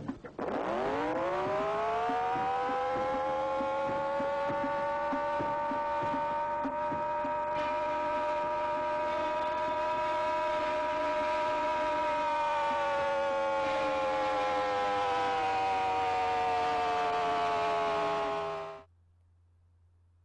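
Air-raid siren winding up from a low pitch to a steady wail. It holds the wail, sinks a little in pitch, and then stops sharply near the end.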